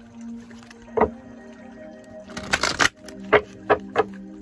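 Tarot cards being handled on a cloth-covered table: a sharp tap about a second in, a short rapid flurry of card clicks a little past the middle, then three quick taps near the end. Soft background music with steady held tones plays underneath.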